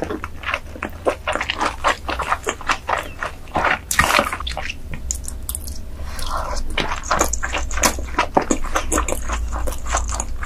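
Close-miked wet chewing and mouth smacking while eating seafood: a steady run of quick, sharp, wet clicks, with a new bite taken partway through.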